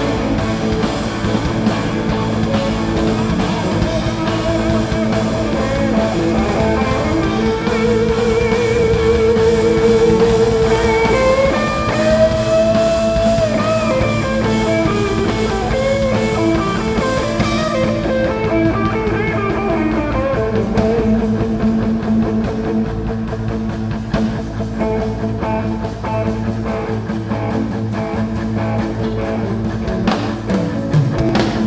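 Live rock band playing, with several electric guitars, bass guitars and a drum kit. A long wavering lead line bends up and down through the middle.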